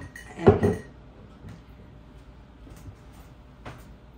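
Large glass mixing bowl clunking as it is lifted and set down on the kitchen counter: one loud knock about half a second in with a brief ringing, then a faint click near the end.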